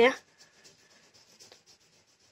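Faint, quick, even colouring strokes on paper, about five a second, as a drawing is shaded in fast.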